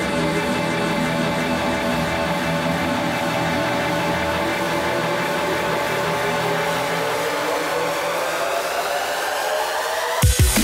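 Drum and bass breakdown with no drums: sustained layered synth chords over a hissing noise wash, with a rising sweep climbing through the second half as a build-up.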